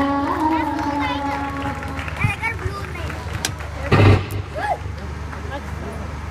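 A singer holds the last note of a devotional song, which ends a little under two seconds in. Scattered voices follow, and a brief loud burst comes about four seconds in.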